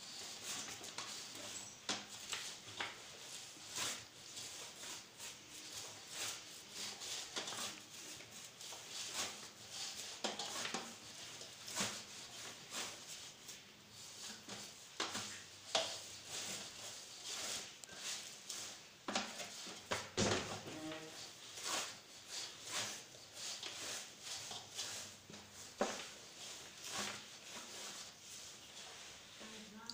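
Atta (wheat-flour chapati dough) being kneaded by hand in a steel plate: irregular soft pressing and squishing sounds, one or two a second, as the knuckles push into the dough.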